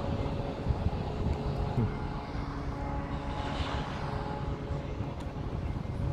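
Steady engine hum with a noisy background, holding a few steady low tones, and a swell of hiss about halfway through.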